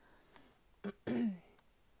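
A woman clearing her throat once, just after a second in, a short rough sound that falls in pitch. A brief click comes just before it.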